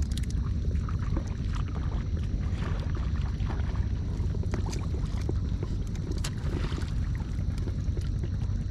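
Hands working through wet mud and shallow water, with small squelches, splashes and clicks scattered throughout, over a steady low rumble.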